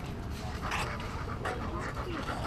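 Belgian Malinois panting while walking on a lead, close to the microphone, over a steady low wind rumble.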